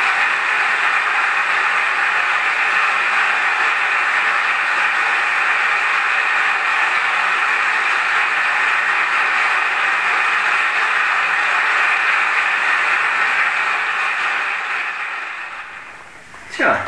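Large theatre audience applauding, a dense, steady clapping that fades out near the end.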